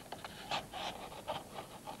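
Scissors cutting into a paper tube, a series of short crisp snips and paper rustles at a few a second.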